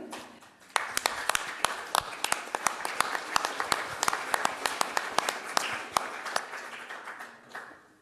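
Audience applauding. It starts suddenly about a second in and dies away near the end.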